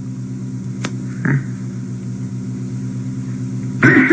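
Steady electrical mains hum with several evenly spaced overtones over faint hiss, the background noise of an old tape recording. A single sharp click comes about a second in, followed by a brief voice sound, and a man's speech starts again right at the end.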